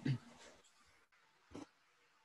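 A brief laugh that trails off at once, then near silence broken by one short soft sound about one and a half seconds in.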